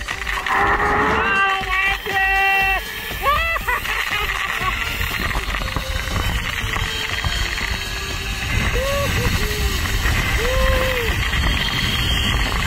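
Zip-line trolley running down the cable, a steady rushing noise with wind on the microphone, while voices call out a few times over it, once near the start and again near the end.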